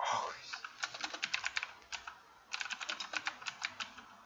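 Computer keyboard typing: two runs of quick keystrokes, the second starting about two and a half seconds in after a short pause.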